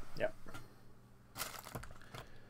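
A brief rustle of something being handled on the bench, about one and a half seconds in, after a short spoken word.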